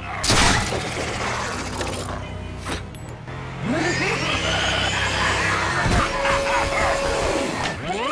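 Animated-show soundtrack: dramatic music under sound effects, with a loud crash just after the start and another sharp hit about three seconds in, then sweeping whooshes.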